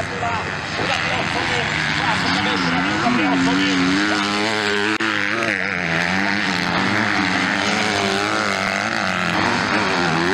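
Motocross bike engines running hard, their pitch rising and falling repeatedly as riders work the throttle through the track's corners.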